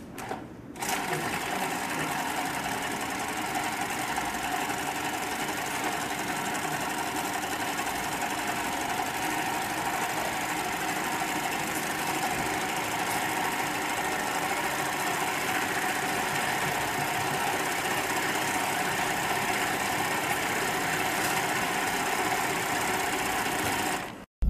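Hightex flatbed single-needle lockstitch industrial sewing machine with wheel and needle feed, starting about a second in and then running steadily at an even speed while stitching through leather.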